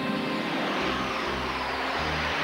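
Electronic sci-fi intro music opening with a synthesised spaceship rushing sound, a dense whoosh over held tones. Low bass notes come in about a second in.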